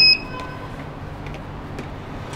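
Elevator floor button pressed: a click and a short, high electronic beep right at the start as the button registers, then only quiet background in the car.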